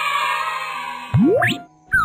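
Cartoon transition sound effects: a shimmering, sparkly whoosh for about the first second, then a quick upward pitch sweep, and a downward sweep starting near the end.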